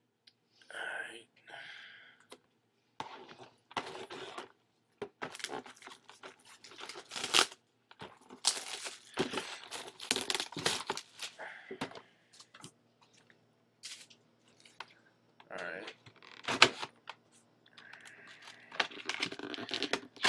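Plastic shrink wrap being torn and crumpled off a sealed trading-card box in irregular rips and crinkles, with a couple of sharper, louder crackles, one near the middle and one late.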